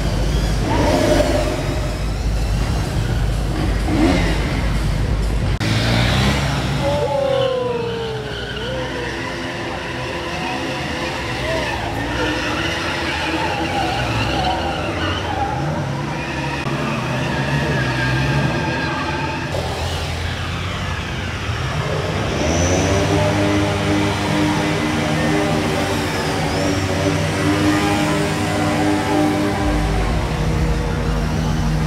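Bajaj Pulsar stunt motorcycles' single-cylinder engines revving, the engine notes rising and falling as the bikes are ridden through wheelie stunts. A little past the middle, one engine climbs in a long rise and holds steady high revs.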